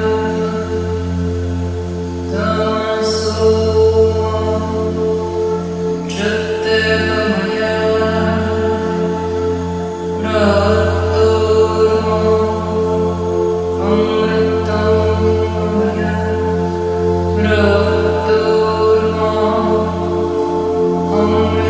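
Tibetan singing bowls struck with a mallet about every four seconds, each strike ringing out and slowly fading over a steady low hum, with a chanted mantra.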